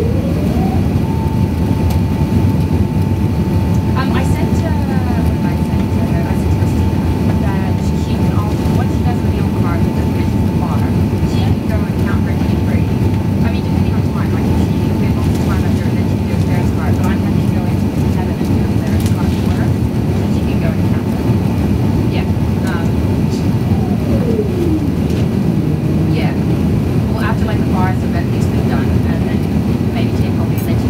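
Airbus A380-800 cabin noise in the climb: a steady rumble of engines and airflow. Over it a single mechanical whine rises in pitch at the start, holds one steady note, and slides back down about 24 seconds in.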